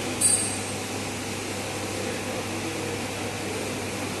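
Steady ventilation hum in a small room, with one short, sharp metallic clink about a quarter second in as test clips are handled.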